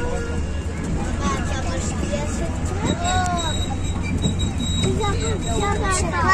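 Steady low rumble of a moving tourist train, heard from an open-sided carriage, with children's voices over it.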